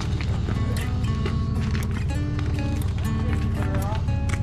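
Background music: a song with a steady beat and a sung vocal line.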